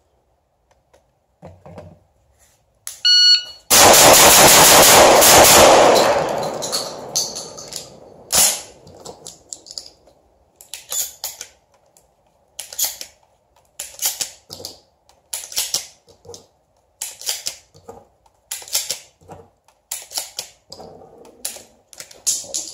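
A shot timer beeps once. A Benelli M4 12-gauge semi-automatic shotgun then fires a rapid string of shots that run together into one loud, overloaded blast of about two and a half seconds, followed a couple of seconds later by one more sharp crack. After that come short sharp clicks about once a second as shells are pushed into the magazine tube for the reload.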